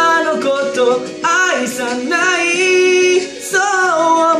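A man singing a slow J-pop ballad melody, gliding between notes and holding one long note for about a second near the middle.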